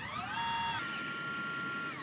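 Celestron Evolution GoTo mount's drive motors slewing the telescope to a selected target: a motor whine that rises in pitch as the slew speeds up, holds steady, steps up higher a little under a second in, and starts to fall near the end as the mount slows toward its target.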